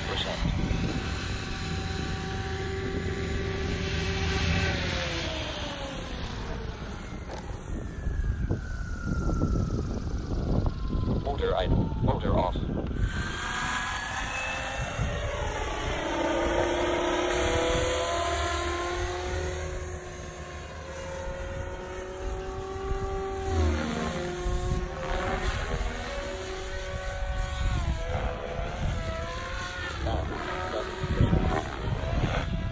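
SAB Goblin 500 Sport electric RC helicopter in flight: the whine of its rotors and motor slides down and back up in pitch again and again as it passes and turns, with a low rumble underneath.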